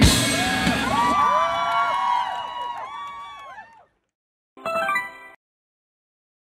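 Live rock band music ending on a final hit. A cluster of sliding tones follows, rising and falling as they fade away over a few seconds. After about a second of silence comes a short electronic jingle, under a second long.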